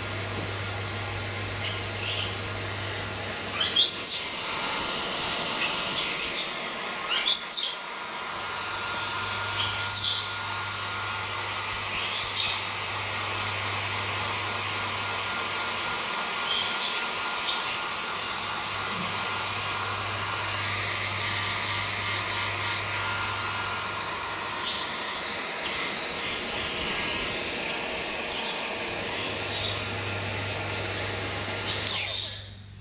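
Electric hair dryer running steadily while drying a wet baby monkey's fur, its hum dropping briefly twice. Short high chirps come every few seconds over it.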